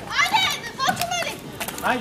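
Children shouting and calling out in high-pitched voices while playing, two shouts in the first second and another near the end.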